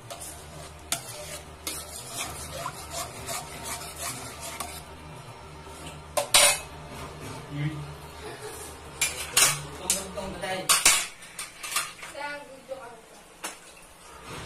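A metal spoon stirring and scraping in a wok of chili sauce, with irregular clinks and scrapes against the metal, the loudest a few sharp ones in the middle and second half. The sauce is being stirred as it cooks down to thicken.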